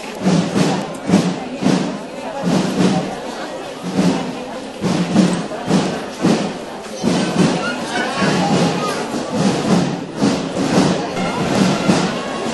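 A procession drum beating a steady march rhythm, about two strokes a second, over the murmur of a walking crowd's voices.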